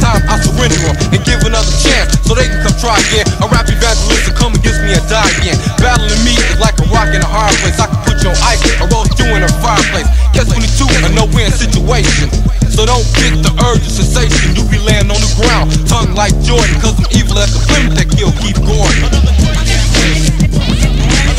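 1990s hip hop track playing: a rapper's vocals over a drum beat and a stepping bass line.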